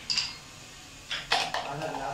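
Carrom shot: a sharp click as the striker is flicked and hits a piece, then a quick cluster of hard clicks about a second in as pieces knock against each other and the board.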